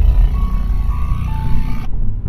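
An electronic music track playing through the 2022 Mazda 3's Bose car audio system, over the low rumble of highway road noise in the cabin. Near the end the track stops and the high end drops out briefly before the next track begins.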